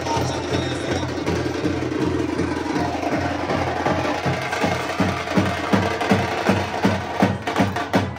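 A street drum band with slung dhol-type drums playing a fast, steady teenmaar beat; from about halfway the strokes grow sharper and louder.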